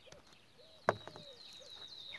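A knife cracking through a dry, hardened bread slice: one sharp crack a little under a second in. Birds call and chirp in the background.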